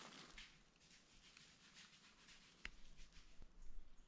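Near silence: faint outdoor background noise, with one faint click about two-thirds of the way through and a few low bumps near the end.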